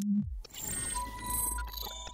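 Electronic logo-intro sting: a low tone drops in pitch at the start into a deep bass rumble, with crackly high glitch noises over it. A thin steady high tone comes in about a second in.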